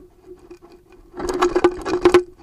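A knife cutting into a jackfruit's rind, heard through a piezo contact microphone on the fruit's surface: faint crackles at first, then a loud, dense crackling scrape from a little past halfway. A steady low hum runs underneath.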